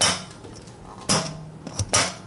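Metal spring latch on a vintage Hoover Constellation 444 canister clacking as it is worked by hand: a sharp clack at the start, another about a second in, and two more near the end.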